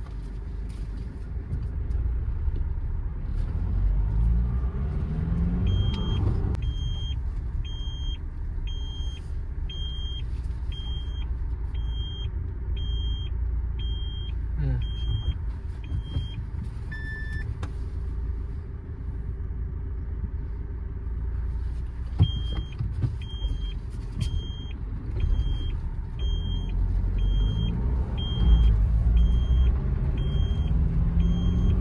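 Mahindra Scorpio N's engine and road noise heard from inside the cabin while driving. The engine note rises as the SUV accelerates about four to six seconds in and again near the end. A turn indicator ticks about one and a half times a second for several seconds, twice, with a single short chime in between.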